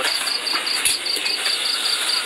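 Crickets chirping steadily, about six short chirps a second, over a soft hiss of other night insects.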